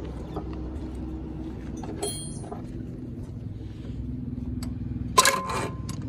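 Steady low hum with scattered light metallic clicks and clinks. About five seconds in, a sudden loud burst with a whine: the starter motor of the rebuilt Isuzu four-cylinder diesel, wired straight to a battery, is energised and briefly turns the engine over.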